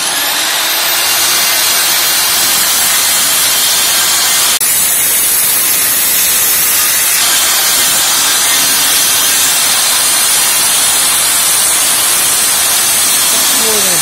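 A Bort BHK-185N 1300 W electric circular saw starts up with a fast rising whine, then cuts steadily through a 40 mm thick board, with one brief dip in the noise about four and a half seconds in. It goes through the board without effort, "like through butter".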